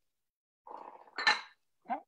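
A kitchen utensil clinking once against a dish, with a short scrape just before it.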